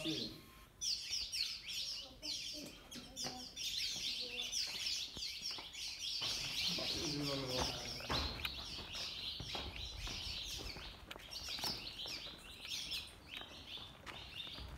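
A dense chorus of high, rapid chirping calls from many small animals, each a short falling chirp, repeated many times a second without pause. A brief voice comes in about seven seconds in.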